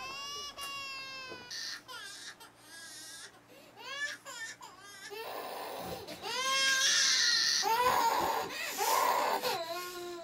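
A baby crying in repeated wails, which grow louder and more intense about five seconds in.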